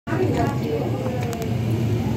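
Indistinct voices talking over a steady low hum, with a few faint clicks about halfway through.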